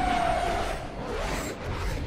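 F/A-18 Super Hornet fighter jets passing low and fast, a dense jet roar with a slightly falling whine in the first second.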